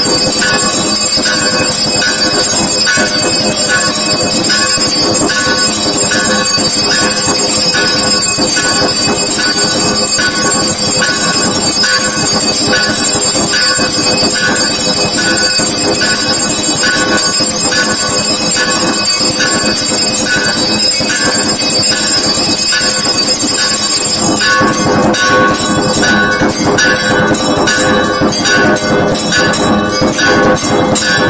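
Temple bells clanging without pause in a steady rhythm during the camphor-lamp aarti, their high ringing sustained throughout. About six seconds before the end the ringing becomes faster and busier.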